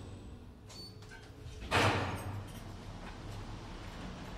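Elevator doors of a KONE-modernized traction elevator sliding open on arrival at a floor: a burst of noise a little under two seconds in that fades over about a second, leaving a low steady hum.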